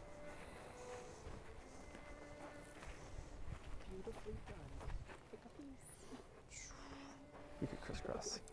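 Faint voices murmuring quietly over a low outdoor rumble.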